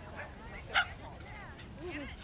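A small dog gives a single short, sharp yip about a second in, over low background chatter.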